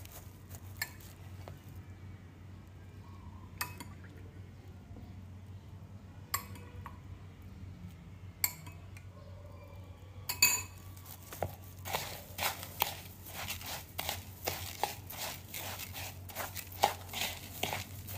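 Metal spoon clinking and scraping against a bowl while stirring flattened green rice (cốm dẹp) moistened with coconut water. There are a few separate clinks at first, then quick repeated strokes from about two-thirds of the way through, over a faint steady low hum.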